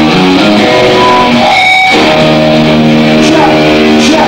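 Loud rock music led by electric guitar, with a brief break about one and a half seconds in before it carries on.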